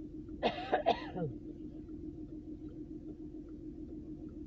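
A person clears their throat with a short cough in two or three quick bursts about half a second in. After that only a steady low hum remains.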